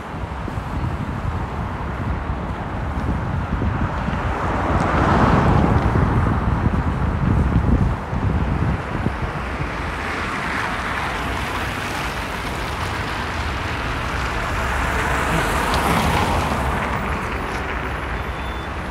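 City street traffic: cars passing close by, the noise swelling and fading about three times, with wind noise on the microphone underneath.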